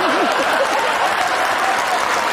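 Audience applauding and laughing. A loud, wavering laugh rides over the clapping at the very start, then the steady clapping carries on.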